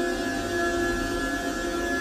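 A steady electronic drone of several held tones over a low rumble that comes in at the start.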